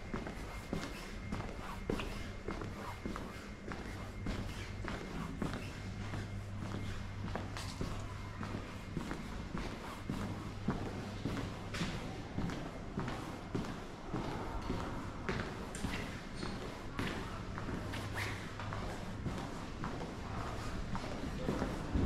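Footsteps walking over stone and tiled paving through an arched passageway, short steps repeating throughout, over a low steady hum.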